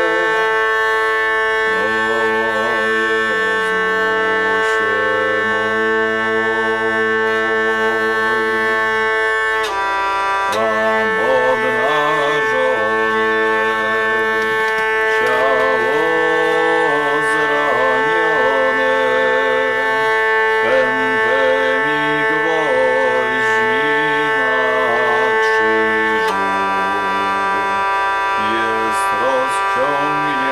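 Hurdy-gurdy playing: a steady, buzzing drone holds under a wavering melody line. The sound breaks off briefly about ten seconds in, and the drone changes pitch near the end.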